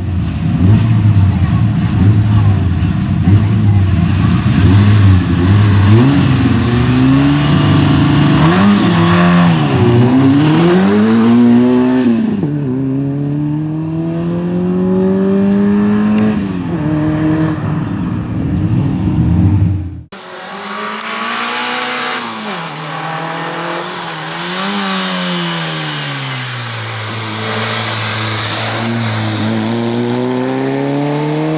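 A Peugeot 106 rally car's engine revving hard in short pulses at first, then pulling up through the gears. Its pitch rises and falls again and again as it accelerates and brakes for the cones on a slalom run. About two thirds of the way in, the sound cuts off suddenly and returns slightly quieter and more distant, with the car still revving up and down through the cones.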